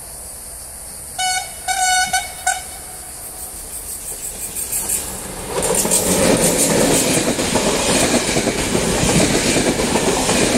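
A TrainOSE class 120 "Hellas Sprinter" electric locomotive sounds its horn in three short blasts about a second in, then draws nearer and passes close by hauling passenger coaches. The passing train is loud from about five and a half seconds in, its wheels clattering rhythmically over the rail joints.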